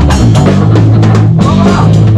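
Punk band playing live in a rehearsal room: a drum kit beating a fast, even rhythm with cymbals, over sustained electric guitar and bass chords.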